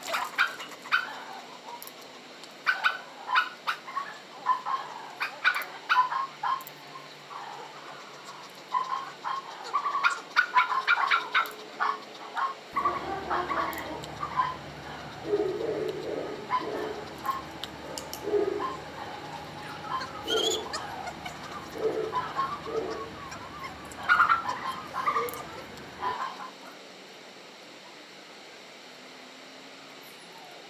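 Shepherd-type dog whining and yipping in many short, high-pitched bursts, with a few sharp clicks of a training clicker.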